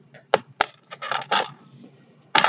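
Two sharp clicks of a small hard plastic object knocking against a wooden tabletop, followed by brief handling noise.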